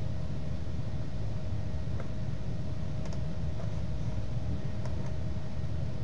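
Steady low hum and hiss of background noise with a faint constant tone, and a few faint, scattered mouse clicks.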